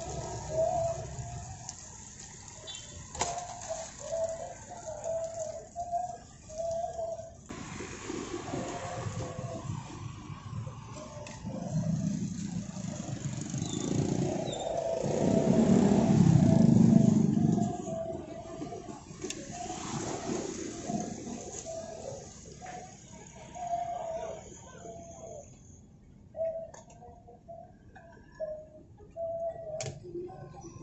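Street traffic, with a motor vehicle passing close by: a low rumble that swells and fades over several seconds around the middle.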